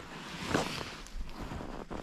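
Outdoor wind noise on the microphone, a low steady hiss, with faint rustling as a fish is handled in gloved hands.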